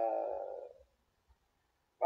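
The tail of a man's drawn-out hesitation "uh", fading out under a second in, followed by dead silence in the call audio.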